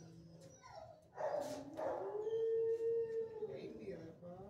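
A dog howling: one long, steady call of about two seconds that rises at the start and falls away at the end. It follows a short, sharp bark-like sound about a second in.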